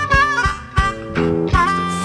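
Blues harmonica playing bent, sliding notes over acoustic guitar and bass.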